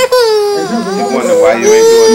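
A baby about one year old crying loudly in long, drawn-out cries, upset at being held for his first haircut. The first cry falls in pitch and a second is held steady near the end.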